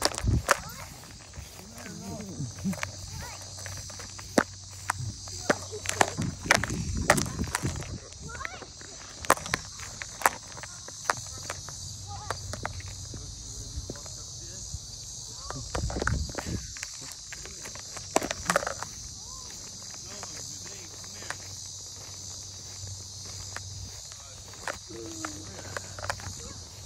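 Footsteps on grass and irregular knocks from the handheld phone as the person filming walks, over a steady high chorus of crickets. A faint child's voice calls now and then.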